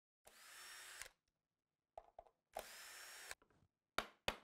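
Two faint, short bursts of a power drill whirring, each with a rising whine as it spins up, and a few light clicks between them. A sharp mallet tap on the enclosure follows at the very end.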